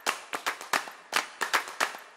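A quick run of sharp hand claps, about five a second and evenly spaced.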